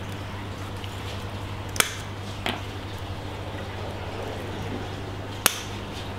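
Coral cutters snipping branches off an Acropora colony: sharp, crisp snaps of the stony skeleton, one about two seconds in, another half a second later, and the loudest near the end. A steady low hum runs underneath.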